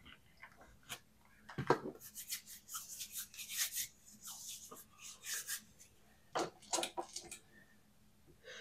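Hands handling paper and plastic on a tabletop: a run of quick, light rustling and rubbing strokes, with a few soft knocks among them.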